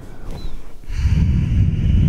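A person breathing out audibly and slowly during a yoga forward fold, the breath swelling into a low rumbling rush about a second in.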